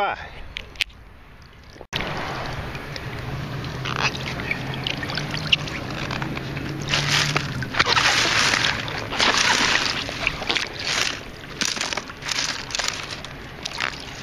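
Scoop load of sand and gravel being sifted in water: water sloshing and pebbles rattling on a mesh sifter, in irregular louder bursts in the second half.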